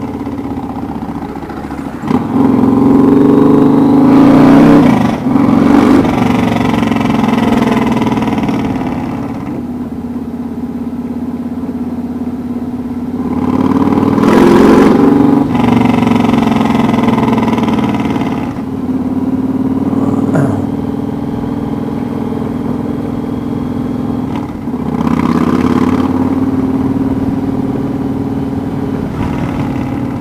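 Yamaha Raider S's big V-twin running loud through a straight pipe that has lost its baffle, opening up to accelerate three times, about two, fourteen and twenty-five seconds in, and easing back to a steady cruise in between.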